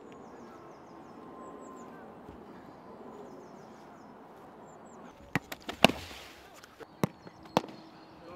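Footballs being kicked and caught: a quick run of sharp ball strikes past the halfway point, the loudest among them, then two more near the end. Faint bird chirps sound in the background before them.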